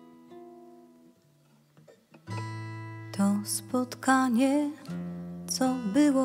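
Steel-string acoustic guitar fingerpicked: a phrase dies away, then a new one starts on a low bass note about two seconds in. From about three seconds in, a woman's singing voice with vibrato comes in over the guitar.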